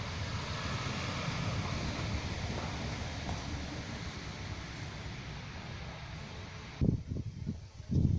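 Steady wind noise on the microphone, a even rushing hiss strongest in the low rumble. It cuts off abruptly near the end, followed by a few low bumps.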